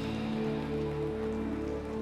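Live rock band's final chord held and ringing out, with a steady high hiss over it. One low note drops out about a second in.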